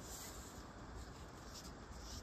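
Faint breeze: a low wind rumble with light rustling that comes and goes.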